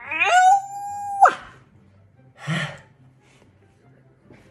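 A man's exaggerated, loud yawn voiced as a wail: the pitch rises at once and holds high and steady for about a second, then breaks off suddenly with a last upward squeak. About a second later comes a short breathy burst.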